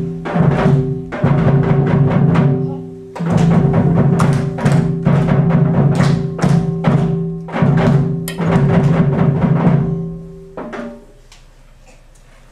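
Children's flute ensemble playing with drum beats, the music ending about ten and a half seconds in.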